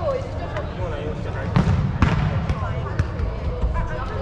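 A ball kicked and bouncing on the wooden floor of a sports hall: a few separate thuds and knocks, the heaviest about one and a half to two seconds in. Voices chatter throughout.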